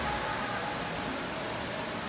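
Steady, even background hiss of room noise in a large hall, with no distinct event standing out.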